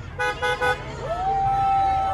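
Car horns honking: three short toots, then a long held horn note from about a second in.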